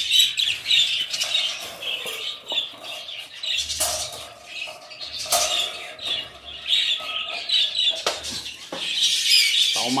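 Budgerigars chattering and chirping continuously, with a few sharp clicks among the calls.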